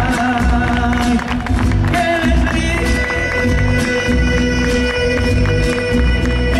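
Live band music with a male singer holding long, drawn-out notes over guitars and a rhythmic bass pulse.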